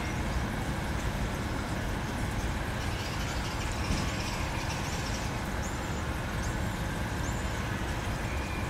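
Steady low outdoor rumble, with a run of short, high chirps repeating about one and a half times a second from about three seconds in.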